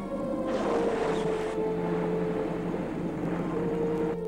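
Film trailer soundtrack: long held low tones of the score under a rush of sea noise, like water surging, that starts about half a second in and breaks off sharply about a second later.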